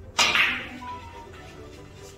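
Billiard cue striking the cue ball into the clustered object balls: one sharp crack near the start that dies away over about half a second. Background music plays underneath.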